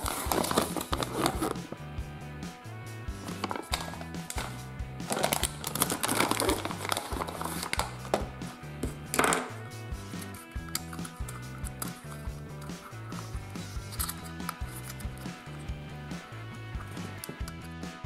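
Background music with a repeating bass line, over the crinkling of a foil toy packet being torn open near the start and scattered clicks and rustles of plastic toy parts being handled.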